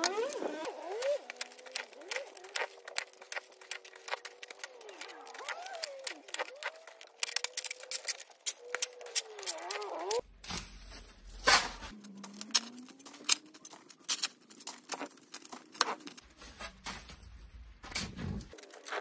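Clumps of packed snow being tossed onto a snow pile: a steady run of crisp crunches and soft knocks, with faint voices in the background.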